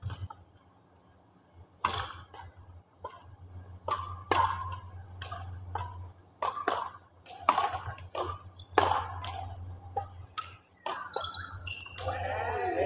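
Badminton rally: sharp, echoing knocks of rackets striking the shuttlecock, many in quick succession, starting about two seconds in, over a steady low hum.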